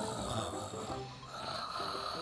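A person snoring softly in sleep, the snore swelling and fading in slow breaths.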